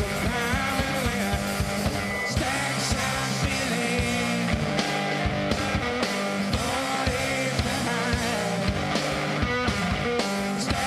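Live blues-rock from a two-piece band: distorted electric guitar and a drum kit playing a steady driving beat.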